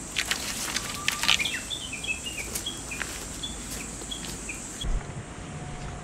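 Cut bamboo poles clacking against each other as they are picked up off the ground, followed by a bird giving a quick run of short, high chirps. A low steady hum comes in near the end.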